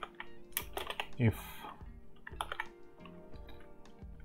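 Keystrokes on a computer keyboard: a handful of separate key clicks in two short groups, not a steady run of typing.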